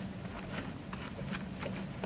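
Faint rustling and scattered light clicks of hands working a car seat's nylon harness strap through its fabric seat cover, over a low steady hum.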